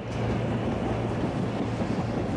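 SEPTA Silverliner IV electric multiple-unit commuter train running past: a steady rush of wheel and rail noise with a low steady hum underneath.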